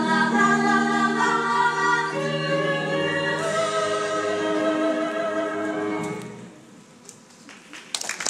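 A group of voices sings held closing notes of a live stage musical number, heard from the audience seats with the hall's reverberation. The held chord moves up about three and a half seconds in, and the singing stops about six and a half seconds in, leaving a brief hush.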